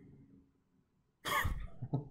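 A man's sudden, loud cough-like burst of breath about a second and a quarter in, trailing off into a short voiced sound.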